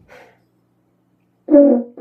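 French horn blown by a first-time player: after a silent moment, one short, loud, steady note sounds near the end. It comes out too high.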